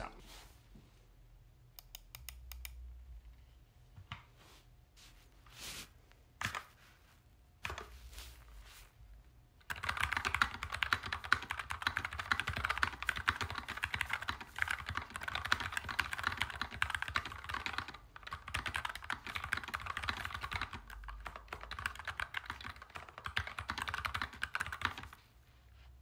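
NuPhy Air60 low-profile mechanical keyboard with tactile brown switches being typed on. A few scattered key clicks come first; about ten seconds in, fast continuous typing starts and runs as a dense stream of clicks until it stops just before the end.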